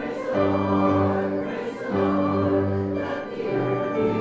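A hymn refrain sung together by a church congregation, in slow, held notes with short breaks between phrases.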